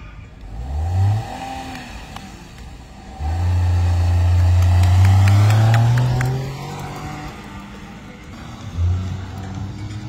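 Small hatchback car's engine revving briefly, then pulling hard for about four seconds with its pitch climbing steadily, and revving once more near the end.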